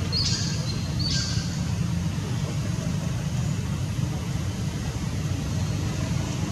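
Steady low background rumble. Two short high bird chirps come about a second apart near the start, each a quick falling note that levels off.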